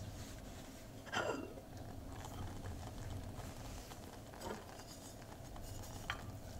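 Quiet kitchen handling of an enamel saucepan of rice: the lid lifted off and the rice stirred with a wooden spoon. Two brief louder sweeping sounds come about a second in and again about four and a half seconds in, over a low steady hum.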